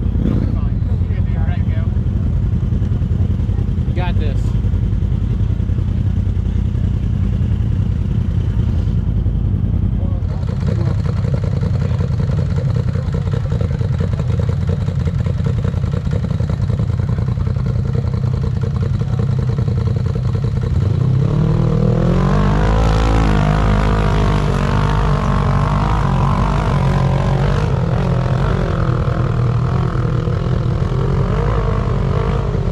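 Rock bouncer buggy's engine revving up and down repeatedly as it works up a rocky slope, starting about two-thirds of the way in, over a steady low engine rumble.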